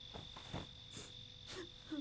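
Crickets chirring in a steady, even high drone, faint under a few soft sniffs from someone crying.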